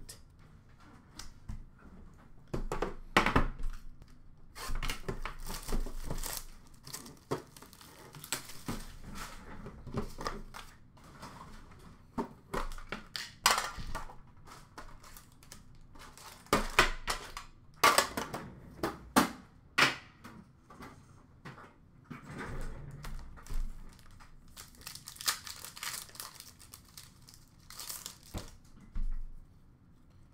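Hockey card packs being torn open and their wrappers crinkled, with cards and tins handled in between. The crackling and tearing comes in irregular bursts, louder a few times, with short quiet gaps.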